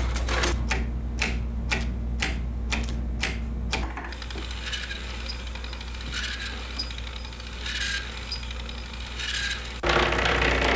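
Small motorized Lego Technic gear mechanisms clicking and clattering. Sharp clicks come about two or three a second for the first four seconds, then give way to a softer, continuous rattle with a faint short chirp about once a second, over a low steady hum.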